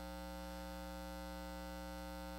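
Steady electrical mains hum: an even, unchanging buzz made of many evenly spaced overtones, carried through the sound or recording system.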